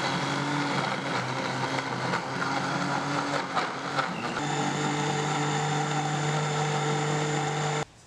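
Philips countertop blender motor running steadily as it purées soursop leaves, turmeric and garlic in rice-washing water. Its pitch steps up slightly about four seconds in as the leaves break down into liquid, and it cuts off suddenly just before the end.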